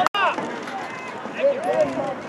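Several voices calling out across an outdoor football field over a background of crowd chatter, with a couple of louder shouts a second or so in.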